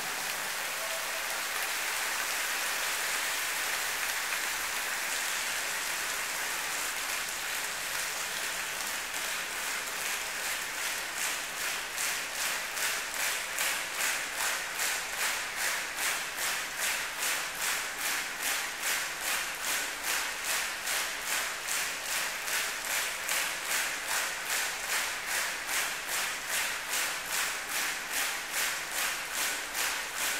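Concert hall audience applauding. About ten seconds in, the applause turns into steady clapping in unison, about two claps a second, which grows stronger: a call for an encore.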